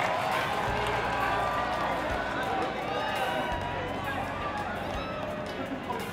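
Outdoor ambience at a football pitch during a warm-up: several voices calling out and chattering at a distance over a steady open-air background, with no one voice close or dominant.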